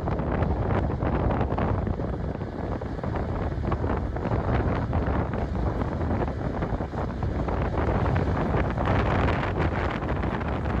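Wind buffeting the microphone in a steady, rough rush, with a distant John Deere 8RX tractor pulling a planter running faintly beneath it.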